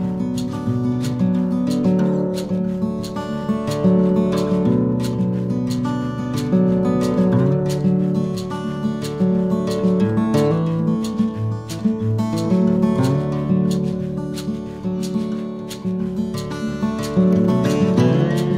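Background music: acoustic guitar strumming a steady rhythm.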